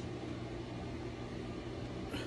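Steady low hum with a soft hiss from a ventilation system, with no other sound standing out.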